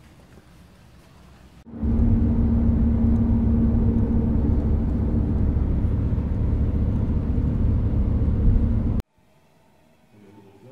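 Inside a moving coach: a steady, loud low rumble of engine and road noise with a steady hum over it. It starts abruptly about two seconds in and cuts off abruptly about a second before the end.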